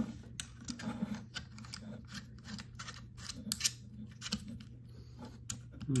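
Light clicks and taps of hard plastic and metal as a smartphone holder is handled and fitted onto the mounting plate of a Zhiyun Crane M3 gimbal, scattered irregularly over a faint steady hum.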